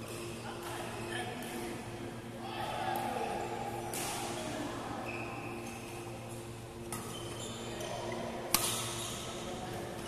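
Background sound of a busy indoor badminton hall: distant voices from other courts over a steady hum, with a few sharp racket-on-shuttlecock hits, the loudest a single crack about eight and a half seconds in.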